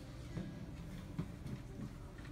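Faint room sound of a seated congregation: low murmuring and a few small knocks, with one sharper click a little past the middle.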